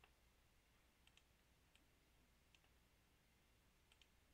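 Near silence broken by a few faint, isolated computer mouse clicks.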